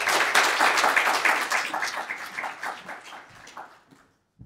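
Audience applauding at the end of a talk, loudest at first and dying away toward the end.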